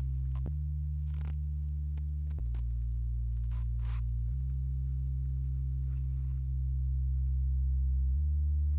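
Sustained analog synthesizer bass line through diode clipping: deep held notes that step to a new pitch about every two seconds, with a few faint clicks.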